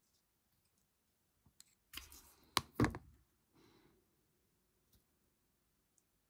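Close-up handling of small craft pieces and tools on a cutting mat: a rustle about two seconds in with two sharp clicks in quick succession, then a softer rustle, otherwise quiet.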